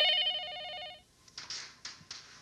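Cordless home telephone's electronic ringer trilling for about a second and then cutting off. A few short clicks and rustles follow.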